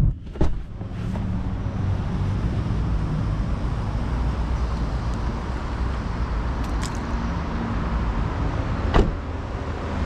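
Steady road traffic noise from a busy road. There is a sharp knock about half a second in and another near the end.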